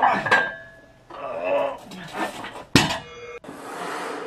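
Loaded barbell tipping off to one side, its iron weight plates sliding off and clanging onto the floor. Several metal clanks and crashes, the loudest near the end.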